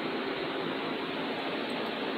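Steady, even background hiss with no other events: room noise, such as a fan or air conditioning, picked up by the microphone.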